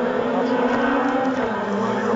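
Race car engine running hard on the hill-climb course, a sustained pitched note whose pitch steps up shortly after the start and dips briefly near the end.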